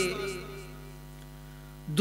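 Steady electrical mains hum from a microphone and sound system during a pause. A man's voice dies away at the start, and his speech starts again right at the end.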